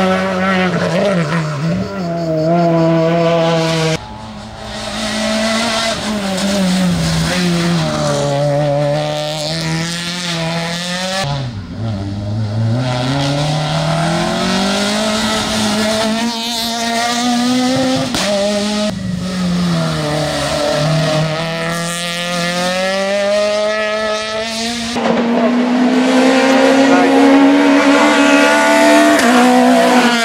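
Peugeot 208 R2b rally car's 1.6-litre four-cylinder engine revving hard, its note climbing and dropping through gear changes and lifts for the corners, in several passes joined by abrupt cuts. Tyres squeal in the bends.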